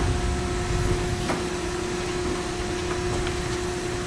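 Hydraulic power unit of a four-roll plate bending machine running with a steady hum while it drives the opposite lateral roll up into position at the start of the program's first step.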